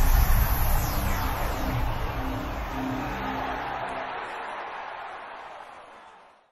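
Closing logo sting music: a heavy low hit at the start, then a short run of notes over a low rumble, fading out steadily toward the end.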